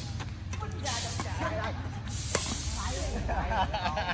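Outdoor badminton rally: a racket strikes the shuttlecock sharply a little over two seconds in, with a lighter hit about a second in, and shoes scrape on the paved court between the hits. Players' voices join in during the second half.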